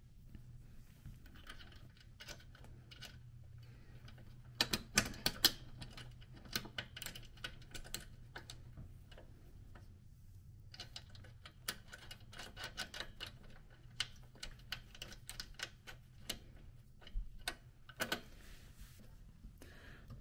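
Small metal hardware clicking and ticking as hands thread a nut onto a bolt by hand, in irregular clusters of light clicks.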